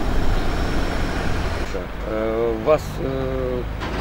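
Low, steady rumble of outdoor street traffic. About halfway through, a man's voice holds two drawn-out hesitation sounds.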